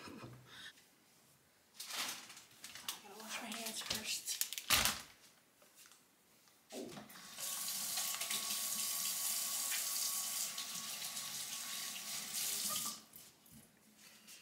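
A kitchen sink tap running steadily into the sink for about six seconds, then shut off, after a few short knocks and clatters of things being handled on the counter.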